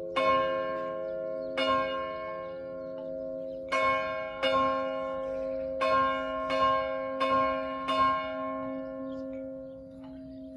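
Church bells in F, A-flat and C, one cast in 1651 and two in 1959, struck one at a time. There are eight strokes, irregularly spaced about a second apart, each tone ringing on and overlapping the next.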